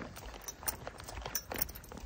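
Irregular light clicks and rustling from a person walking with a paper takeout bag in hand.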